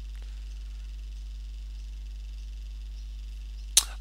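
Steady low electrical hum, with a single short click near the end.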